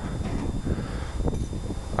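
Outdoor background noise with a low, steady rumble of wind on the microphone, and no distinct clicks or knocks.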